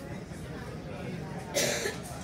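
A person coughs once, short and loud, about one and a half seconds in, over a steady low background rumble.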